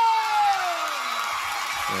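Studio audience cheering and applauding as a TV host's long drawn-out shout of the performer's name falls away in pitch about a second in. A band starts playing at the very end.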